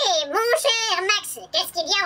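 A very high-pitched, squeaky voice chattering in quick syllables with no intelligible words, its pitch swooping rapidly up and down, with a short break near the end.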